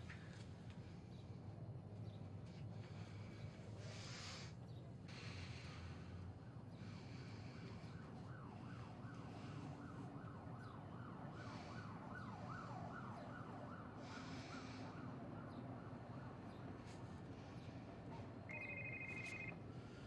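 Faint sirens wailing outside, a fast rising-and-falling yelp through the middle stretch. Near the end a mobile phone starts to ring.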